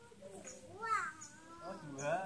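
A small child's high-pitched wordless cries, two gliding calls about a second apart, with faint high bird chirps repeating behind them.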